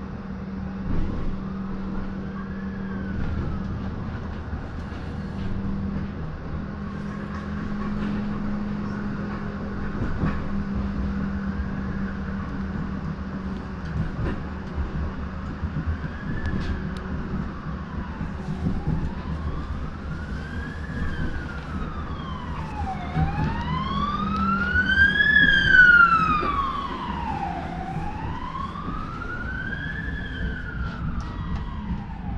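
An emergency vehicle's siren wailing slowly up and down, about one rise and fall every four to five seconds, faint at first and growing loud near the end. Underneath runs the steady rumble and hum of a Düwag GT8S tram under way, heard from inside the car.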